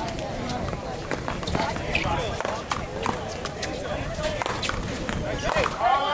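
One-wall paddleball rally: sharp cracks of a small rubber ball off paddles and the wall, with players' running footsteps on concrete. Voices talk throughout, louder near the end.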